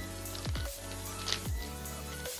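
Background electronic music with a steady beat and held synth chords.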